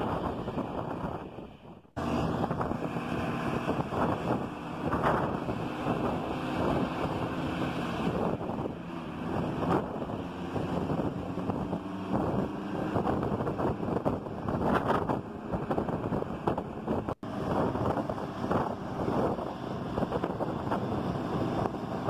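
Road noise from a moving car with wind buffeting the microphone, and engine sound from the vintage diesel buses running just ahead. The sound fades out, returns abruptly about two seconds in, and cuts out for an instant near the end.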